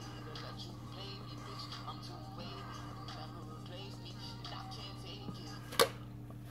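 Music playing faintly at high volume, leaking from Beats Solo3 wireless on-ear headphones, over a steady low hum. A single sharp click comes near the end.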